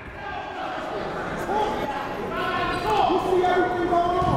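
Several voices talking and calling out in the background, echoing in a gymnasium, during a lull in play.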